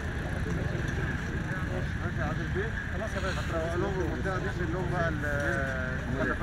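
Several men's voices talking at once, indistinct, over a steady low rumble.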